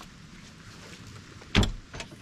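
A single loud mechanical clunk from the rear of a 4x4 about one and a half seconds in, as the vehicle is being unlocked and its back opened, over a steady low outdoor background.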